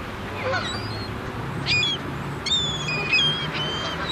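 A mixed flock of gulls and Canada geese calling: several short, high-pitched calls and honks in quick succession, over a low steady hum.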